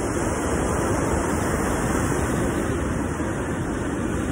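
Ocean surf breaking and washing up a sandy beach, a steady rushing noise with no let-up.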